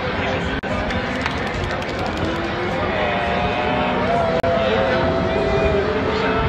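A man crying, his voice breaking into a long, wavering held cry in the second half, over background crowd noise.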